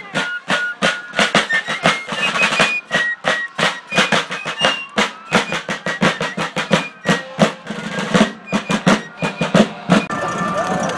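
Fife and drum corps playing a march: fifes piping a high melody over rapid snare drum strokes and rolls.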